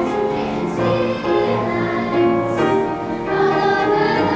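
Children's choir singing a song together, holding notes that change pitch every half second or so.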